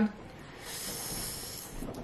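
A woman's breath hissing through her teeth for about a second, a pained wince at a sore back molar that hurts whenever she eats.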